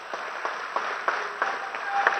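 Audience applauding: a dense, steady wash of clapping in a hall, between lines of a speech.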